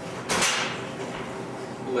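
A person sitting down heavily on an upholstered couch: one brief thump and rustle of cushions and clothing about a third of a second in, fading quickly into steady room hiss.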